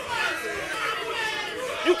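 Crowd chatter and voices reacting, with some laughter, during a pause in a rapper's verse.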